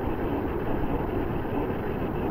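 Steady background noise, an even low rumble and hiss with nothing standing out.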